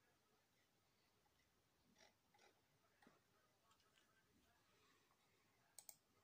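Near silence: room tone with a few faint clicks, two sharper ones close together near the end.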